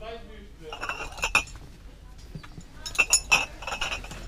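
Glass beer bottles clinking together as they are handled, with a few sharp ringing clinks in two bunches, about a second in and again about three seconds in.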